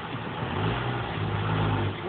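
A low, steady motor hum that comes up about half a second in and runs on with a short dip about a second in.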